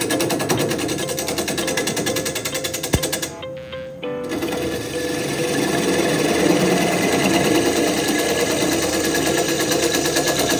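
Bowl gouge cutting a big leaf maple bowl blank spinning on a wood lathe, a rapid chattering cut. About three seconds in there is a sharp click and the cut stops for about a second, leaving the lathe's steady hum, before the gouge bites again.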